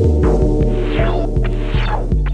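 Breakbeat hardcore / jungle track: a deep, held sub-bass note and a sustained synth chord, with a steady drum hit about every 0.4 seconds.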